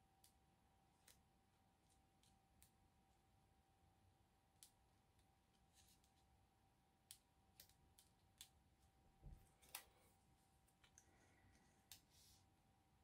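Near silence, broken by faint scattered clicks and light taps as small paper and cardstock pieces are slid and set down on a cutting mat. There is a soft thump and a sharper click about nine seconds in, over a faint steady hum.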